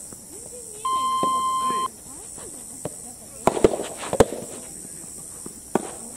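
A flat electronic beep of about a second, starting just under a second in, then two sharp racket-on-soft-tennis-ball impacts about half a second apart, with voices calling in the background.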